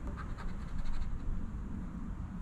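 Scratch-off lottery ticket being scratched with a round chip-shaped scratcher: a run of quick scraping strokes that fades after about a second as a number is uncovered.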